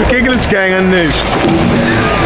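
Wordless human vocal calls, including one drawn-out 'ooh' that falls in pitch about half a second in, a reaction to a stunt scooter rider going down on the ramp.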